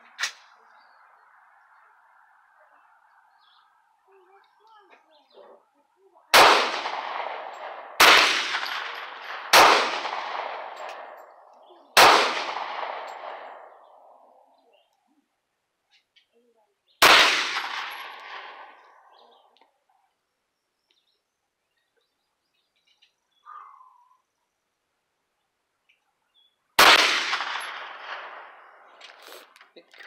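Six gunshots from a Hi-Point 995 9mm carbine, each dying away in an echo over about two seconds. The first four come a second and a half to two and a half seconds apart, the fifth follows after a pause of about five seconds, and the last comes near the end.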